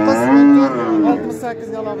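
A cow mooing once: a single call of about a second whose pitch rises then falls.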